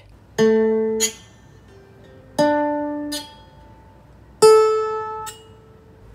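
Three single notes plucked on a 16-string hollow-body lyre harp, about two seconds apart. Each note is cut short after under a second by a brief buzz: a fingernail touching the still-vibrating string.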